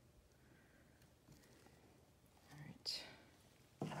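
Near silence: faint room tone, broken about two and a half seconds in by a brief breathy vocal sound with a short hiss, before a woman starts to speak at the very end.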